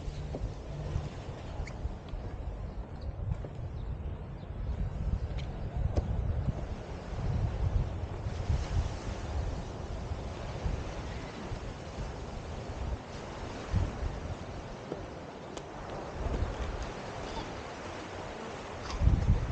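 Wind buffeting the camera's microphone in uneven low gusts, over a fainter steady outdoor hiss.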